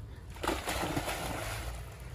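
Golden retriever splashing into shallow lake water and sloshing through it, a steady splashing that starts about half a second in.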